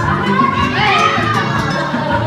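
A young child singing karaoke into a microphone, the voice amplified through a loudspeaker over backing music, with other children's voices joining in.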